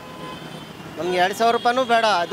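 Background road traffic noise with a brief faint horn tone at the start, then a man talking from about a second in.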